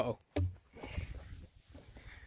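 A plastic flying disc landing on grass with a single dull thump about half a second in, followed by faint rustling.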